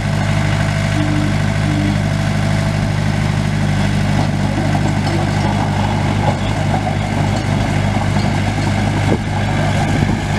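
Komatsu D21P-6 dozer's four-cylinder diesel engine running at a steady, unchanging speed.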